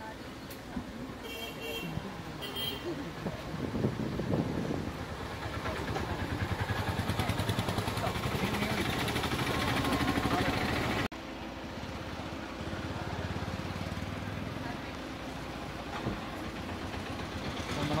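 A vehicle engine running, with voices in the background. It grows louder over several seconds, then drops sharply about eleven seconds in to a lower, steadier level.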